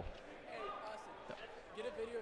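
Faint background voices in a large gymnasium, with a few soft thuds of dodgeballs bouncing on the hardwood floor in the second half.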